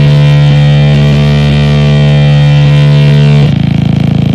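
Harsh noise music: a loud, steady buzzing drone with many overtones, which switches abruptly about three and a half seconds in to a rougher, rapidly pulsing buzz.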